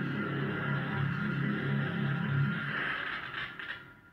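An eerie electronic 'moon sound' from a Jupiter-moon sound video, played back through a speaker. Low notes pulse about three times a second under steady higher tones, and the sound fades out near the end.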